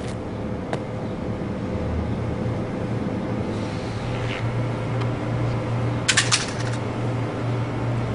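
A single sharp knock less than a second in, as a sneaker stomps a burnt plush toy on concrete, over a steady low mechanical hum. A brief cluster of clicks and rustles comes about six seconds in.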